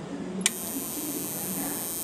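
Old Toshiba CRT television switched on with a click about half a second in, then a steady high-pitched whine over a low hum from the running set. Power is reaching the set but the circuit is loading the supply down, which the technician suspects is a short.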